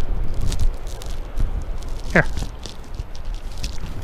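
Strong wind buffeting the microphone, a steady low rumble, with scattered small clicks and rustles.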